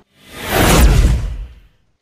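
Whoosh transition sound effect: a single rush of noise that swells in, peaks about three quarters of a second in, and fades away over the next second.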